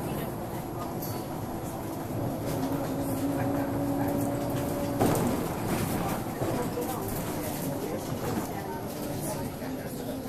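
Wright Solar single-deck bus under way, heard from inside near the front doors: its engine and ZF automatic gearbox run with a steady whine. About halfway there is a sudden knock, after which the tone shifts and wavers.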